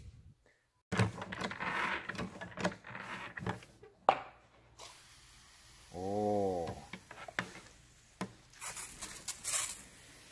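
Hand-pumped 20-litre backpack sprayer being worked to build pressure: irregular knocks and creaks of the pump lever and piston, with a sharp click about four seconds in, on a newly replaced piston packing that now holds pressure. A short rising-and-falling tone follows a few seconds later, and a hiss near the end.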